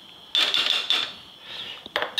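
Metal ladle clattering and scraping against a stainless-steel soup pot for under a second, starting about a third of a second in, with a single sharp click near the end.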